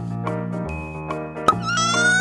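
Background music with a steady beat. About one and a half seconds in comes a sharp click, then a Cry Babies baby doll's electronic crying starts: a high, baby-like wail that rises slightly in pitch.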